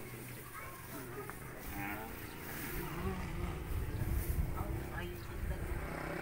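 Faint voices of several people talking, over a low, uneven rumble that grows louder about halfway through.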